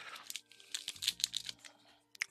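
Foil Pokémon booster-pack wrapper crinkling in the hands: a quick, irregular run of crisp crackles that dies away near the end.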